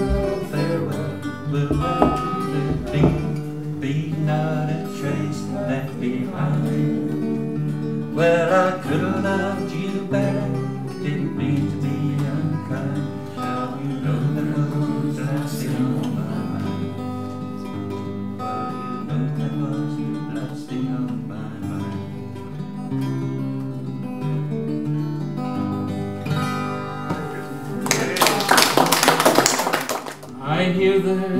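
Acoustic guitar playing live, a run of picked notes and chords without words. Near the end comes a short, loud rush of noise, louder than the guitar.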